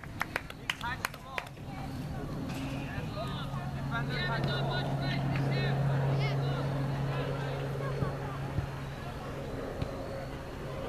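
A steady engine drone that swells over the first few seconds, is loudest around the middle and eases off toward the end, like a motor vehicle passing by. A few sharp clicks sound in the first second and a half.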